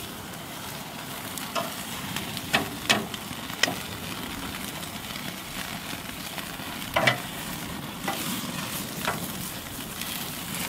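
Grass-fed beef ribs sizzling over a hardwood fire on a gas grill, a steady hiss broken by several sharp clicks of metal tongs against the ribs and grate as they are moved, the loudest about seven seconds in.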